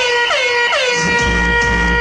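Electronic club music from a DJ set: the kick and bass drop out while a horn-like sample blasts three times, each blast sliding down in pitch and the last one held. The kick and bass come back in about a second in.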